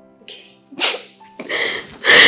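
A woman crying, with three sharp sobbing breaths in quick succession that grow louder, over soft sustained background music.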